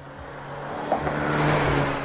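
A motor vehicle passing close by: a rushing sound that swells to a peak about a second and a half in, then falls away, over quiet background music.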